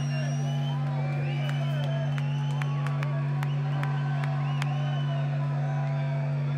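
Concert crowd cheering and whistling after a song, with scattered whistles rising and falling over a steady low hum from the stage.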